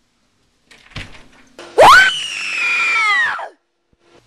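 A thump about a second in, then a woman's high scream that shoots up in pitch, holds for over a second while sagging slightly, and cuts off.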